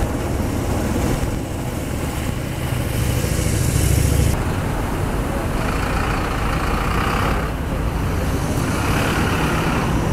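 Procession vehicles passing close by on the road. A low engine rumble, most likely from the escorting police motorcycles beside the hearse, builds to a peak about four seconds in and then cuts off. After that, cars and an SUV pass with tyre noise that swells twice.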